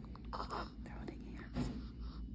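Soft, breathy whispering from a person close to the microphone, in two short stretches, about half a second in and again near the end, with a few faint clicks.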